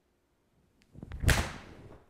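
Mizuno MP-20 HMB 7-iron swung and striking a golf ball off a hitting mat: a rising swish that peaks in the strike about a second and a quarter in, with a short fading tail. A solidly struck shot.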